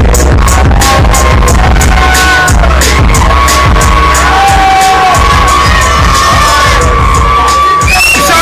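Hip-hop beat played loud and bass-heavy through a club PA system, with the crowd cheering and shouting over it.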